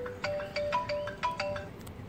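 A short electronic melody, a quick run of about ten clear beeping notes like a phone ringtone or notification tune, lasting about a second and a half.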